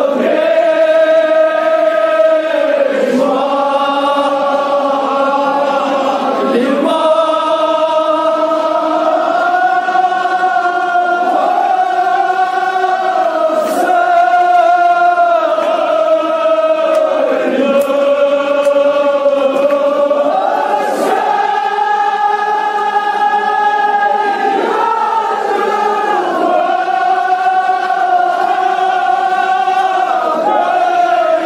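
A crowd of men chanting a mourning lament (noha) together in long, drawn-out phrases of a couple of seconds each. The pitch steps up and down from phrase to phrase, and rises after about two-thirds of the way through.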